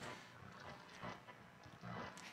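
Very quiet room tone between speech, with a couple of faint soft knocks about a second in and near the end.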